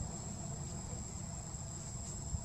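Insects trilling steadily in one continuous high-pitched tone, over a constant low rumble.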